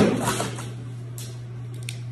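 Heavy-duty snips cutting through a plastic packing strap with one sharp snap right at the start, followed by a few faint clicks of handling over a steady low hum.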